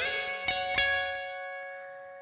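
Electric guitar playing a two-note double stop on the B and high E strings, a major third, slid up into at the start. It is picked twice more and left ringing, fading away.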